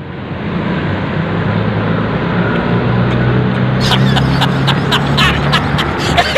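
Street traffic: a steady rushing roadway noise with a vehicle engine's low, even hum that swells in the middle. Light clicks come in over it in the last couple of seconds.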